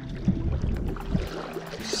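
Water swishing and splashing from a paddle stroke beside an inflatable stand-up paddle board moving through lake water, with a low rumble underneath.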